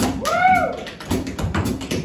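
Tap shoes clicking out quick rhythms on a stage floor, with a jazz band behind. About half a second in, a short voice-like tone rises and falls in pitch.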